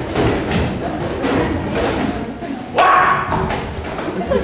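Repeated loud thumps on a stage, coming irregularly about every half second to second, with a short burst of voice about three seconds in.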